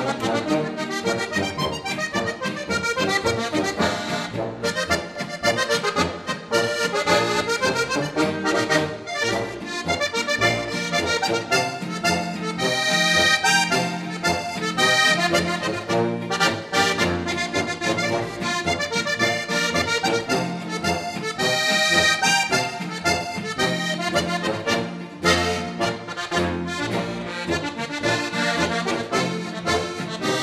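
Diatonic button accordion (Slovenian frajtonarica) playing a polka solo: a quick, continuous treble-button melody over rhythmic bass-button chords.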